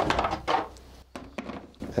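Objects being handled: a short clatter at the start, then a few light, separate clicks.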